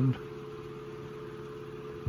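Revox A77 MkIV reel-to-reel tape recorder in fast rewind: the spool motors and the tape running between 10½-inch spools make a steady, quiet whir with a constant tone in it.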